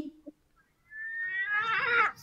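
A drawn-out, high-pitched animal call that starts about halfway through, wavers and rises slightly in pitch, then stops.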